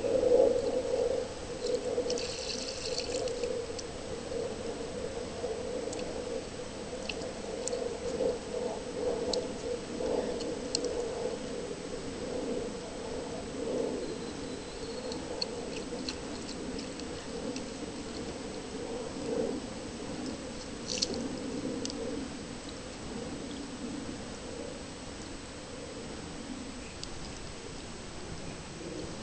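Water spraying steadily from the fountain in the middle of a small inflatable splash pool, with scattered small splashes and clicks.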